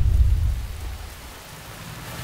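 Rain falling, with a deep low rumble that fades away over the first second or so.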